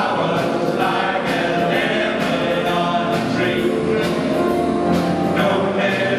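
Male vocal group of seven singing together through handheld microphones, backed by a big band, with a steady beat of drum and cymbal strokes.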